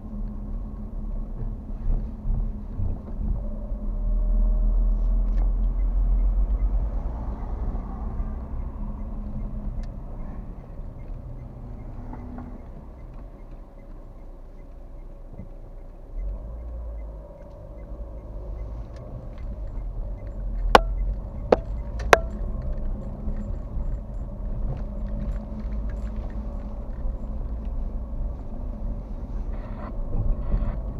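Low rumble of a car's engine and tyres heard from inside the cabin while driving. It eases off as the car slows for a crossing near the middle and picks up again as it pulls away, with three sharp clicks a little past two-thirds through.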